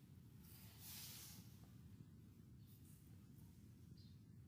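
Near silence: faint room tone with a low steady hum, and a slight hiss about a second in.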